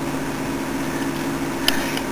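A steady low machine hum made of a few held tones, with a single light click near the end.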